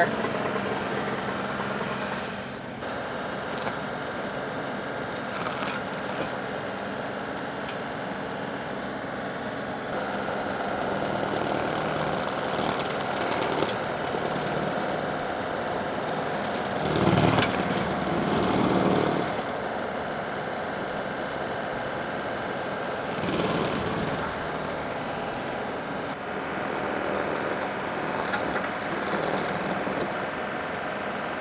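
John Deere 2038R compact tractor's three-cylinder diesel running steadily, driving a PTO-powered Baumalight 1P24 stump grinder dragged through the dirt to chew out the last roots of an ash stump below ground level. The sound swells louder briefly about seventeen seconds in and again about twenty-three seconds in.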